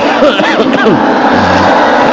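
Many voices of a gathering chanting a Quranic verse together, not quite in unison: overlapping rising and falling melodic lines over a dense wash of voices, as the group repeats the teacher's recitation in tajwid practice.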